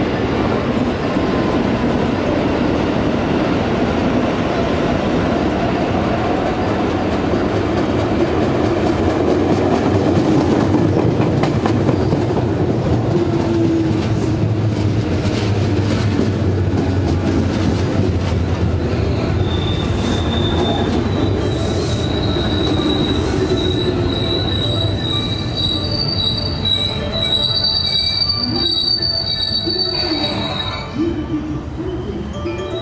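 Electric commuter train pulling into a station platform: a steady rumble of wheels on the rails, with high-pitched wheel squeal starting about two-thirds of the way through as it slows.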